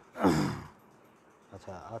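A man's loud, breathy voiced sigh, a short 'aah' falling in pitch, about a quarter second in. A short spoken word follows near the end.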